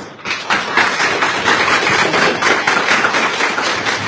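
Audience applauding: many hands clapping densely and steadily, starting a moment in.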